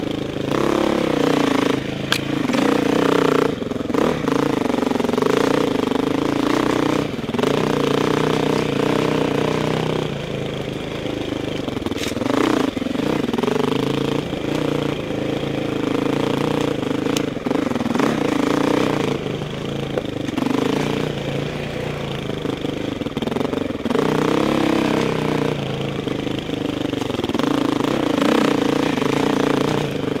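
Four-stroke single-cylinder dirt bike engine, heard from the rider's helmet, revving up and easing off again and again as the throttle is worked along a rough bush trail. A few sharp knocks from the bike over the rough ground come through at intervals.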